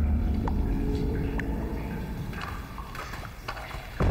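A low rumble slowly fading away, with three single water drops plinking, each a short sharp ping.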